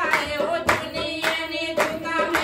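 A group of women singing a Punjabi devotional bhajan to the Mother Goddess in unison, with hand claps on the beat about twice a second and a dholak drum.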